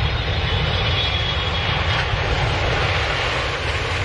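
Twin-engine jet airliner passing low over the runway just before touchdown: a steady deep engine rumble with a high whine that fades about halfway through.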